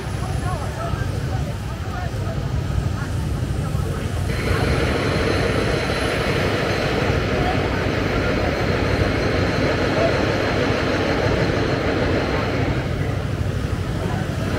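City street ambience: a dense crowd of pedestrians chattering under a steady rumble of road traffic. About four seconds in the noise grows fuller and brighter, easing slightly near the end.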